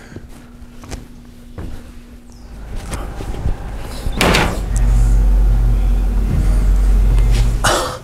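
Footsteps and knocks on the metal cab steps and floor of a steam locomotive, with one sharp clunk about halfway through. A low rumble takes over for the last few seconds.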